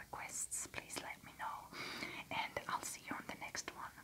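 A woman whispering, the words not clear.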